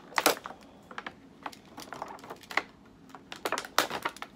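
Irregular clicks and crackles of a clear plastic toy package being handled and cut open, with a sharp click just after the start and a quick run of clicks near the end.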